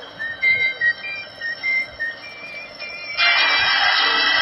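A few short, high chirping notes. About three seconds in, a steady hiss starts suddenly: the surface noise of a gramophone record beginning to play.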